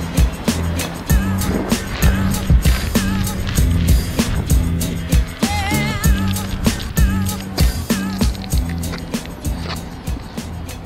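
Background music with a steady beat over a repeating bass line.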